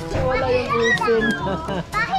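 Children's voices chattering and calling out over one another.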